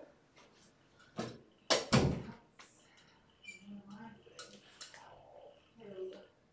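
A door being opened and shut: a knock about a second in, then two sharp bangs close together near two seconds, the second the loudest.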